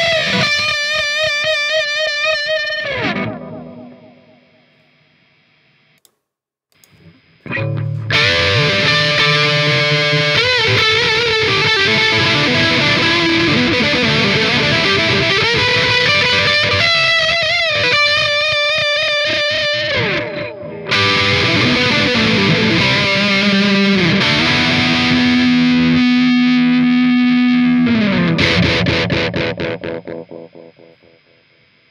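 Gibson Les Paul electric guitar played through an AmpliTube simulation of a distorted Soldano 100-watt amp with a delay pedal: lead lines with wide vibrato. A phrase dies away with delay repeats in the first few seconds, and after a short silence a new lead passage starts. It ends on a long held note that slides down and fades near the end.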